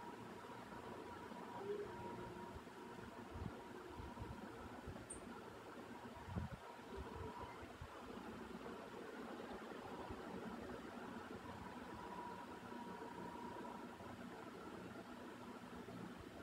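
Faint, steady mechanical background hum, like a fan or a distant engine, with a few soft low thumps.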